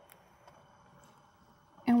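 Near silence: room tone with a few faint soft ticks, then a woman's voice starts near the end.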